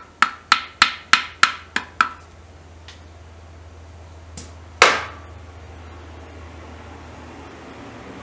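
A hand tool tapping metal parts on the exposed timing gears of a Royal Enfield Bullet engine. First come about eight quick taps, roughly four a second, each ringing briefly. Two lighter taps follow, then one louder knock with a longer ring about five seconds in.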